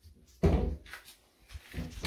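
A wooden kitchen cupboard door closing with a thump about half a second in, followed by a lighter knock of a cupboard door near the end.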